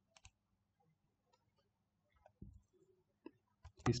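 Faint, scattered clicks of computer keyboard keys as a few letters are typed, with a low knock about halfway through.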